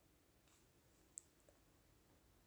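Near silence, with one short, faint click a little over a second in.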